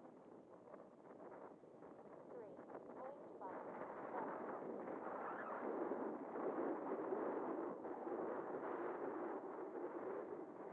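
Wind on the microphone: an even rushing noise that grows louder about three and a half seconds in.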